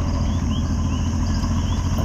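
Puerto Rican coquí frogs calling in short rising chirps and crickets trilling steadily in a night chorus, over a steady low rumble.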